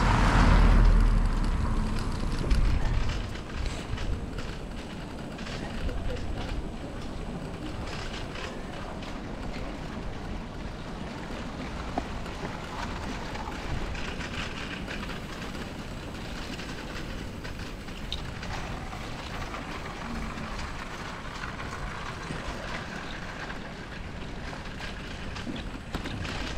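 A small red SEAT car drives past close by, its low rumble fading within the first three seconds. After that, the steady rumble of bicycle tyres rolling over brick paving, with faint small rattles and clicks from the bike.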